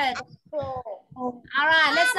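A person's voice on a video call: a few short syllables, then a long, drawn-out call that slides in pitch near the end.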